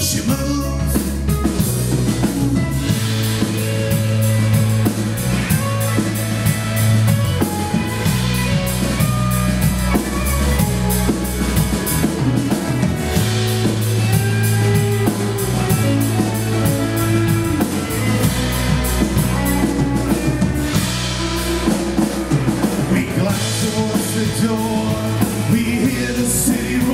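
Live rock band playing an instrumental passage: electric guitars, bass guitar and drum kit.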